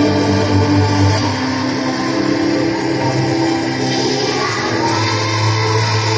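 Religious choral music: a choir singing long held notes that change pitch every second or two.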